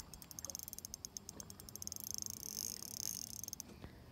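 Fishing reel's drag clicking rapidly as a hooked fish pulls line off the spool. The fast ticking quickens into an almost continuous buzz about two seconds in, then stops shortly before the end.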